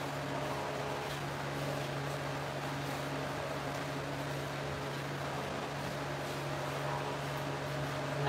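A steady low hum with an even hiss, unchanging throughout: the room's background noise.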